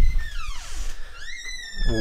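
Dog whining: a high whine that falls in pitch, then a second high, drawn-out whine near the end.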